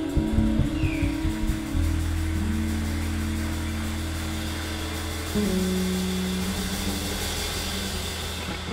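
Live band music: a slow passage of long held low notes that change pitch a few times, with no drums.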